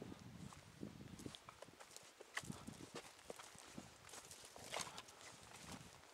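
Faint, irregular footsteps crunching and rustling over dry ground and brush.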